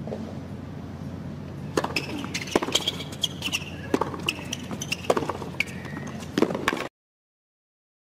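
A tennis rally on a hard court: sharp racquet strikes on the ball and ball bounces trading back and forth, with brief high shoe squeaks, over a low steady arena hum. The sound cuts off suddenly near the end.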